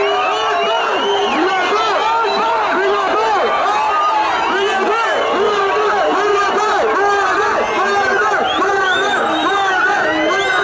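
A marching crowd of many people shouting and cheering at once, a dense, continuous mass of overlapping voices.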